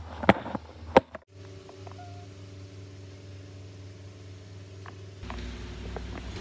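Two sharp knocks from the handheld phone being handled, then a steady low hum in a small room that gets a little louder near the end.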